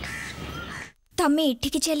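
Outdoor ambience with birds chirping over a soft steady bed, cut off about a second in by a moment of silence, then a voice speaking loudly.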